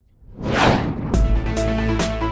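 A falling whoosh sound effect, then electronic music with a heavy bass beat and regular high percussion ticks starting about a second in.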